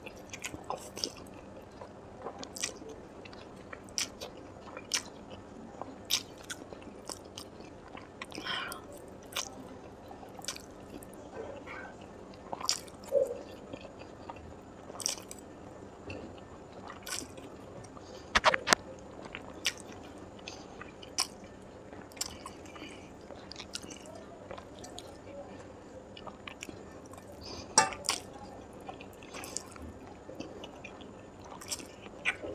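Close-up eating sounds of instant noodles: wet chewing and slurping with many brief sharp mouth clicks scattered throughout, two of them louder, about two-thirds of the way in and near the end.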